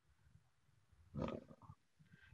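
Near silence, then a little past the middle a brief low vocal sound from a person, under half a second long, like a grunt or a murmured syllable.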